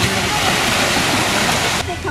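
Steady rush of sea water and small waves washing around people wading in the shallows, cutting off abruptly near the end, where voices take over.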